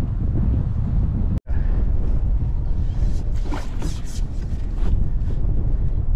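Strong wind buffeting the microphone: a steady low rumble that drops out for an instant about a second and a half in.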